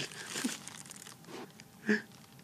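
Faint, broken voice sounds mixed with rustling and handling noise, with a short sharper burst near the end.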